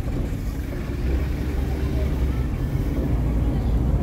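Steady low rumble of a vehicle running, with street noise and faint voices in the background.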